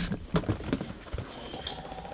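A few light knocks and clicks over about the first second, from a sneaker being handled against clear plastic shoe-storage boxes.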